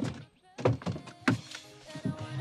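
Two dull thunks from a car's passenger door being unlatched and pushed open. Background music comes in about a second in.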